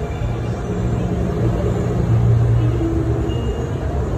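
Street traffic: a motor vehicle's engine runs past close by, a low hum that swells about two seconds in and then fades, over the steady rumble of the road.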